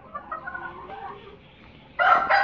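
A flock of chickens clucking, a string of short clucks bunched in the first second and a half.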